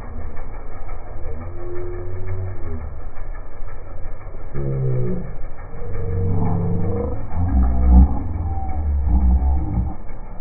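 People's voices hollering and laughing without clear words, over a low rumble that swells near the end.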